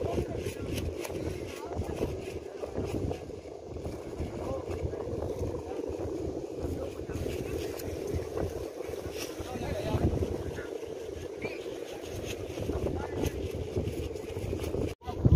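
Steady, wavering drone of Balinese kite hummers sounding from the kites flying overhead, with wind rumbling on the microphone.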